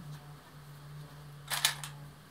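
A short cluster of light clicks, about a second and a half in, from small plastic sewing clips rattling in a metal tin as one is picked out. A faint low steady hum runs underneath.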